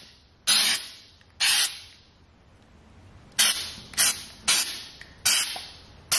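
Aerosol can of rubberized spray sealant spraying in about six short bursts, each a sharp hiss that tails off, with a pause of about two seconds in the middle.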